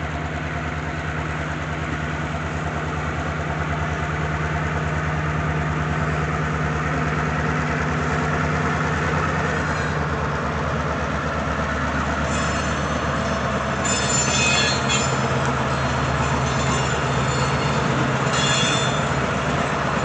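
Norfolk Southern diesel road-switcher locomotive running steadily as it moves a cut of autorack cars past, growing louder as it nears. From about twelve seconds in, high metallic wheel squeals come and go, strongest twice.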